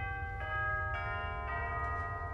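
Doorbell sound effect: a chiming bell struck about four times, roughly half a second apart, the tones ringing on and overlapping.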